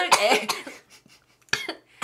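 A woman coughing, choking on a sip of water that went down the wrong way: a run of coughs in the first half second or so, then one more short cough about a second and a half in.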